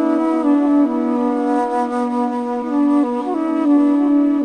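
Slow, layered flute music: several low flute notes held and overlapping, shifting to new notes about once a second.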